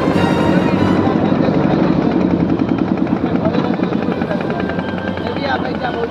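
Boat engine running with a fast, even beat, as background music fades out in the first second.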